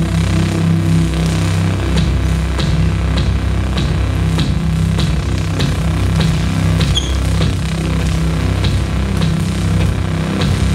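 Live band music: held low bass and guitar notes, joined about two seconds in by a steady percussive beat, a sharp hit roughly every 0.6 seconds.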